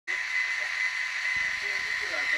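Small electric can motor and gearbox of a Bruder RC truck chassis running steadily: an even whirring hiss with a high whine.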